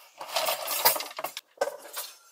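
A bundle of wooden clothes hangers with metal clips clattering and clinking as they are handled and put away, with a few separate clicks near the end.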